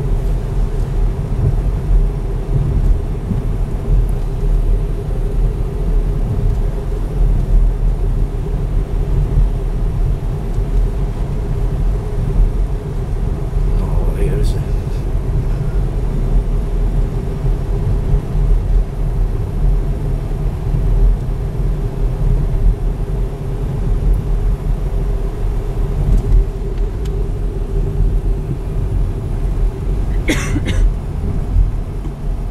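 Car interior road noise while driving: a steady low rumble of engine and tyres with a constant hum, heard from inside the cabin. A brief, higher-pitched sound cuts in about halfway through.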